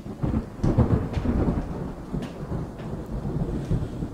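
Low rumbling noise with a few sharp clicks and crackles. It starts abruptly out of near silence.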